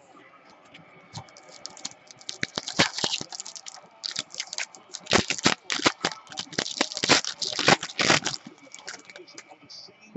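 Foil wrapper of a football trading-card pack crinkling and tearing as cards are handled, a quick run of crackles and rustles for several seconds in the middle, dying down near the end.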